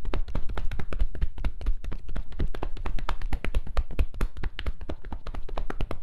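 Percussive hand massage on a thigh through denim jeans: a fast, steady run of hand strikes, about eight to ten a second.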